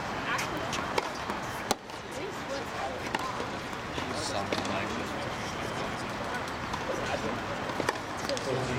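A few sharp knocks of tennis balls being struck and bounced on a hard court, spaced irregularly, the loudest about two seconds in, over a steady murmur of voices.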